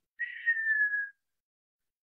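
A woman whistling once with her lips, a single high note lasting under a second that dips slightly in pitch, imitating the whistle of an incoming missile.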